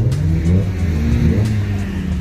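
A car engine revving, its pitch rising twice in quick succession.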